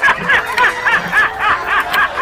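A high-pitched snickering laugh, a rapid run of short bursts about four to five a second, from a laughing-meme clip edited over the footage as a sound effect.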